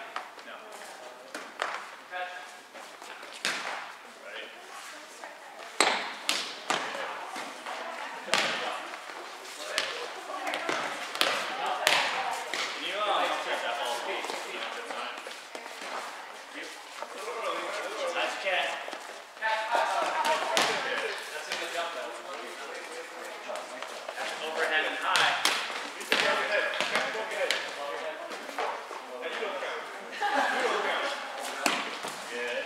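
Volleyballs being struck, caught and bouncing on a hard gym floor, giving sharp slaps and thuds at irregular intervals that echo in a large hall. Scattered voices of players talking and calling run under them.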